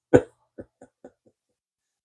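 A man's brief, breathy chuckle: one short burst, then a few faint puffs fading out within about a second.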